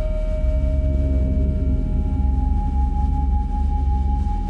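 Ambient background music: a deep steady drone under long held tones, one fading out early and a higher one coming in about halfway through.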